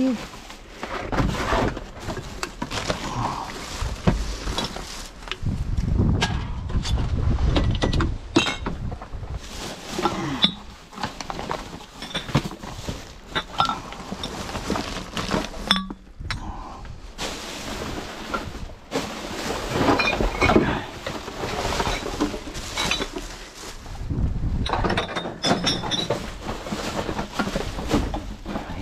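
Plastic garbage bags and packaging rustling and crinkling as hands rummage through a dumpster, with bottles and cans clinking and knocking against each other.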